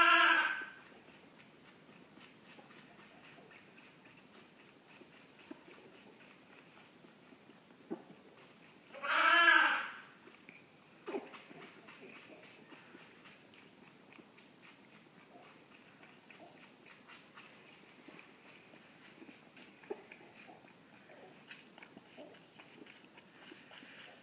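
A bottle-fed newborn lamb suckling at the teat of a feeding bottle, a faint rhythmic smacking about three times a second. It bleats at the start and once more, loudly, about nine seconds in.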